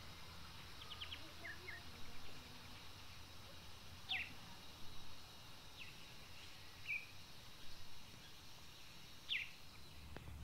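Faint outdoor background with a handful of short, high bird chirps, each a quick downward sweep, scattered through the quiet.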